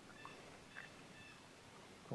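Near silence in the woods, with faint, short, high bird calls repeated a few times.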